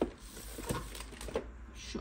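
Cloth rubbing over the plastic lid of a Roborock robot vacuum as it is wiped clean, with a few light taps of handling the unit.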